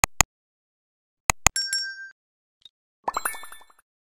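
Animated subscribe-button sound effects: two pairs of quick mouse clicks, the second pair followed by a short bright ding. About three seconds in comes a quick rising run of chiming notes.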